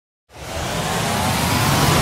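A rising whooshing swell, the build-up sound effect of an animated intro: it starts after a moment of silence and grows steadily louder, with a faint pitch rising inside the noise.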